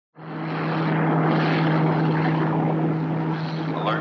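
Rocket-engine sound effect from a 1950s TV soundtrack: a steady rushing roar over a low, even hum, fading in at the start.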